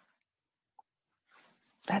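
A pause with a couple of faint mouth clicks, then a short breath in, and a woman starts speaking just at the end.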